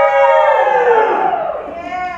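A few voices cheering and whooping in long, drawn-out calls that tail off, with one shorter whoop near the end.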